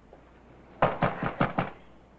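Knocking on a door: five quick raps in under a second, about midway through.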